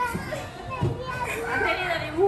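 Young children's voices chattering and calling out, mixed with other talk.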